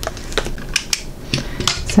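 A cured epoxy resin coaster being handled: a quick, irregular run of sharp clicks and taps as it is freed from its pink silicone flower mold and turned over.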